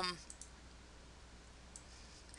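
A few faint computer mouse clicks over quiet room tone, two close together near the start and one near the end.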